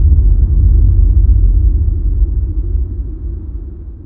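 Deep low rumble left by a boom sound effect, fading away steadily over the few seconds.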